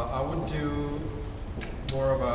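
A man's voice speaking, with drawn-out words, as a composer addresses the players during a recording session.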